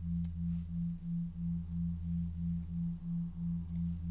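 A low, even tone pulsing about three times a second, over a deeper steady hum.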